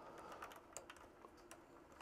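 Near silence with a few faint, scattered small clicks from handling a plastic split-core CT clamp being fitted around a cable.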